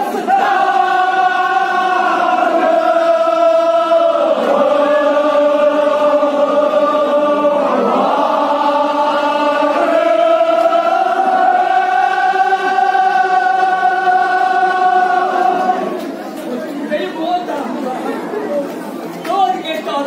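Chanted religious lament sung in long, drawn-out held notes, in a few sustained phrases. The chant ends about sixteen seconds in and gives way to the murmur of a crowd in a large hall.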